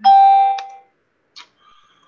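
A short bell-like chime that starts suddenly and dies away within about a second, with a click partway through it.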